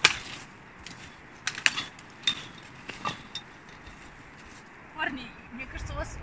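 A few scattered sharp snaps and knocks of twigs, branches and gear as someone pushes through dense brush. The loudest snap comes at the very start and a quick pair comes about one and a half seconds in. A faint voice is heard near the end.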